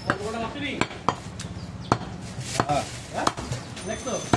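Large butcher's cleaver chopping goat meat on a wooden log chopping block: about seven sharp knocks, unevenly spaced, roughly one every half second to second.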